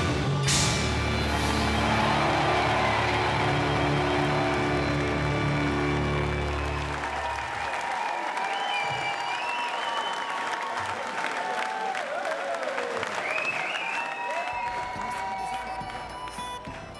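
Amplified rock band's final chord ringing out and stopping about seven seconds in, under a concert crowd cheering and applauding, which carries on alone afterwards.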